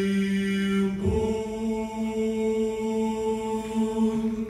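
A male vocal quartet singing in close harmony through microphones, holding long sustained notes. The chord changes once, about a second in, and the new chord is held through the rest.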